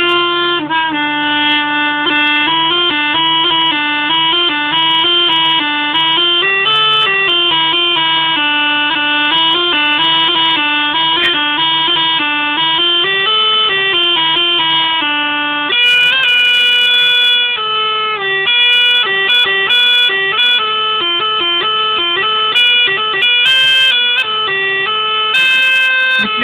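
Hümmelchen (small German bagpipe) playing a Breton tune: a melody on the chanter over a steady low drone, moving higher and louder about two thirds through. Short bursts of crackle come in over the later notes, which the player puts down to condensation forming on the bag's foil.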